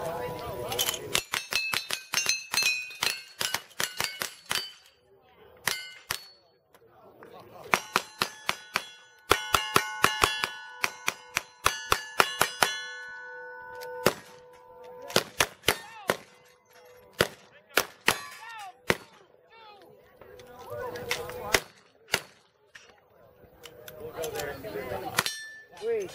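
Cowboy action shooting shoot-off: guns fired in quick strings at steel targets, each hit answered by a bright ringing clang of the steel plate. There are two dense runs of rapid shots, then slower, more spaced shots and a few near the end.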